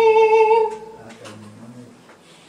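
A live blues band holding its final note: a loud sustained high note over bass and guitar that stops about two thirds of a second in. The low notes die away near the end.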